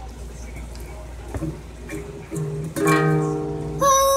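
Small acoustic guitar strummed twice in the second half, the later strum fuller and ringing for about a second. Near the end a young girl starts singing a long held "oh".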